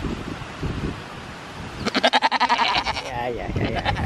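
A goat bleating once: a long, quavering call that starts about halfway in and wavers down in pitch before it ends.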